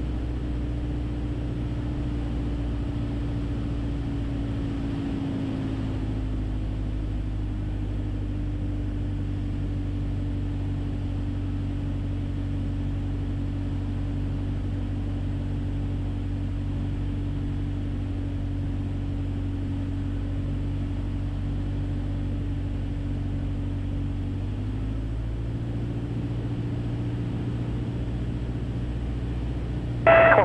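Cabin drone of a 1966 Mooney M20E's four-cylinder Lycoming engine and propeller, steady at reduced power on approach to the runway. Its pitch settles a little lower about five seconds in and rises slightly again about twenty-five seconds in.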